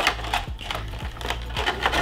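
Clear plastic packaging crinkling and crackling as an action figure is pulled out of it: a run of quick, irregular clicks.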